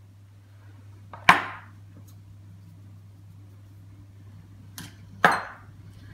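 Two sharp knocks, about a second in and near the end, as metal salt and pepper shakers are handled and set down while seasoning a jug of milk and eggs, over a low steady hum.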